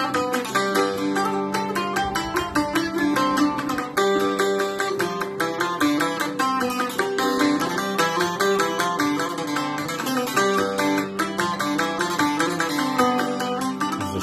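Small mainland-Greek laouto with an ebony bowl, by Emm. Kopeliadis, played with a plectrum: a quick run of picked notes over lower strings that keep ringing.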